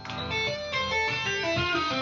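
Electric guitar played legato with the fretting hand: a quick run of hammered-on and pulled-off notes, one after another, in a left-hand strength exercise across frets ten, eight and five.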